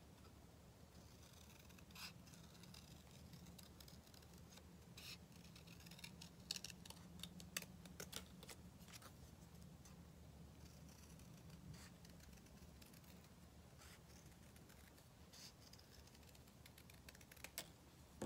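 Scissors snipping through paper, faint and irregular, with pauses between the cuts.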